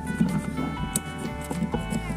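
Instrumental background music with held notes that change pitch every so often, with a sharp click about halfway through.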